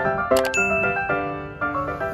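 Silent-film style piano music playing, with a quick click about a third of a second in followed by a bright single bell ding, the sound effect of an animated subscribe button.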